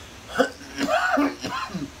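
A man coughs, a sharp burst about half a second in, followed by about a second of throaty voiced sounds.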